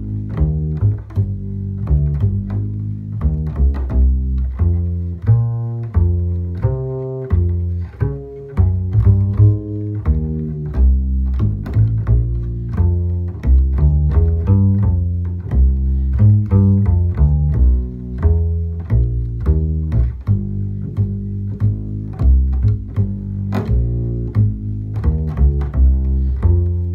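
Acoustic double bass played pizzicato, walking a swing bass line at a medium-up tempo of about three notes a second (176 bpm) in A-flat major, with no other instruments.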